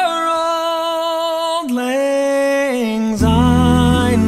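A cappella male tenor singing a solo line alone, holding long notes that step down in pitch. Deeper voices join underneath near the end.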